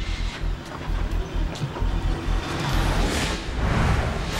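A car's engine and road rumble, with a swelling whoosh about three seconds in.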